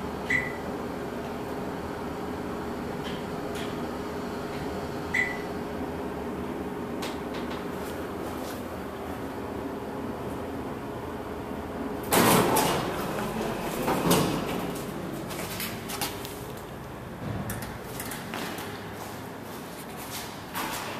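Dover hydraulic elevator car travelling with a steady hum, with two short high floor-passing beeps about five seconds apart. About twelve seconds in the car stops and the doors rumble open with loud clunks, the loudest part.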